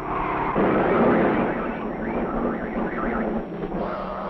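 Sound effect of a car approaching and rushing past: a low engine hum gives way to a loud rushing noise that swells to its peak about a second in and then holds.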